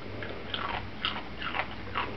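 A dachshund crunching Doritos tortilla chips: five short, crisp crunches in quick succession, about two or three a second.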